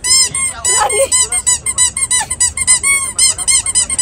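Rubber duck squeeze toy squeaked over and over in quick succession, about five or six short squeaks a second, each rising and falling in pitch.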